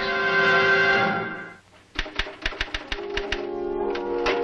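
A music cue holds a chord and fades out about a second and a half in. Then a typewriter clacks out a quick run of about eight keystrokes, as music comes back in underneath.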